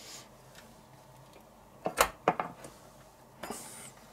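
Stainless-steel wire grill basket being closed and fastened on a wooden cutting board: a few light metal clicks and a knock about halfway through, then a brief rustle.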